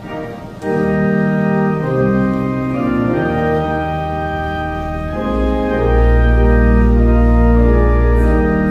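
Church organ playing the opening hymn in sustained chords. It starts softly and swells to full chords within the first second, and a deep pedal bass comes in about five seconds in.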